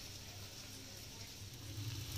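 Quiet background: a faint steady hiss with a low hum that grows louder near the end.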